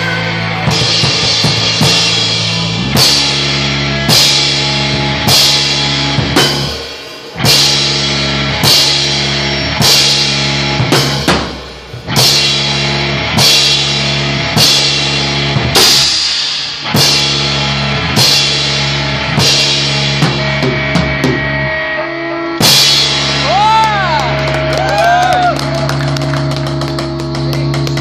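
Rock band rehearsing: a drum kit with a cymbal crash about every second over held electric guitar and bass chords. The music drops out briefly twice.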